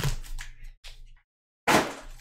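Foil trading-card pack wrappers crinkling and rustling as the packs are handled and slid onto a stack, in short bursts with a brief dead gap just past the middle and a louder crinkle near the end.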